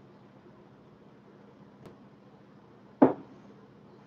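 Quiet room with the steady low hiss of running fans, then a single short knock about three seconds in as a drinking glass is set down on the table.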